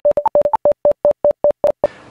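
Segment-transition sting of short synthesized beeps, about a dozen in two seconds, mostly on one pitch with a couple of higher notes, the gaps widening a little toward the end.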